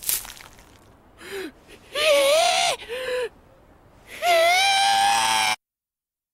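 A man's exaggerated cartoon cries: a few short strained shouts, then one long held scream that cuts off suddenly.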